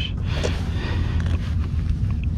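Steady low rumble and hiss of wind on the microphone, with no distinct sounds standing out.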